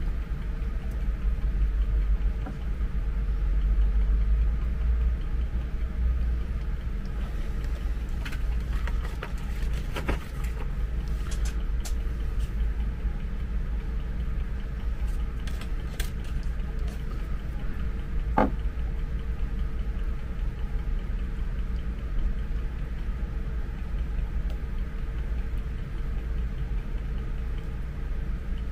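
A steady low rumble with a faint steady hum underneath soldering work on a charger's circuit board. A few light clicks and taps from tools being handled come through, the sharpest about eighteen seconds in.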